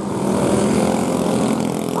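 Racing go-kart engine running under power as a kart drives past close by on a dirt track.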